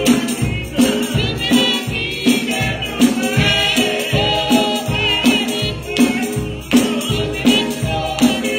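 Gospel singing by a church choir and congregation, with a tambourine shaken over a steady beat.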